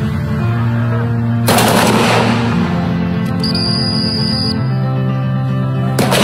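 Dramatic background music with long held low notes that step from one pitch to another. A burst of noise about a second and a half in, and a steady high tone in the middle.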